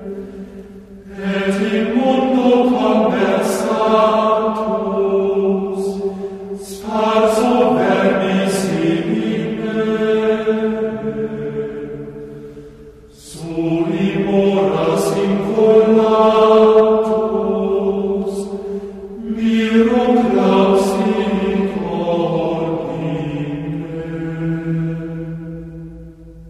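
Gregorian chant: voices singing four long phrases, each about five to six seconds, with short breaths between them.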